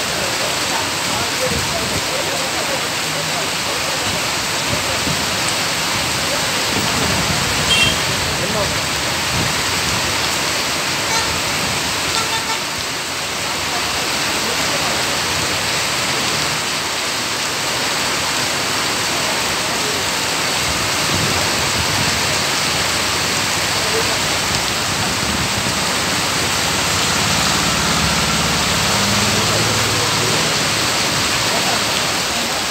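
Heavy monsoon rain pouring steadily onto a wet, flooded street, a continuous hiss. A brief sharp sound comes about eight seconds in, and a vehicle engine hums low near the end.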